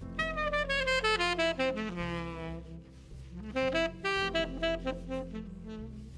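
Tenor saxophone playing a live jazz solo line over a double bass: a phrase with a descending run, a brief lull about three seconds in, then a second phrase.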